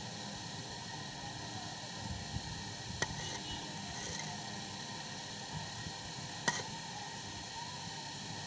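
Silicone pastry brush spreading pizza sauce over raw dough in a pan: faint soft brushing over a steady background hiss, with two light clicks, about three seconds in and again about six and a half seconds in.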